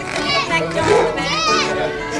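Background music with high-pitched children's voices calling out over it twice.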